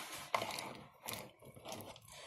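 Snow crab legs clicking and knocking against one another in a dish as they are moved by hand: a few faint, short cracks and taps.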